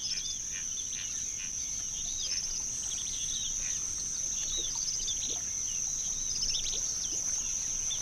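Outdoor nature ambience: a steady high-pitched insect trill runs throughout, with birds calling short, repeated chirps over it.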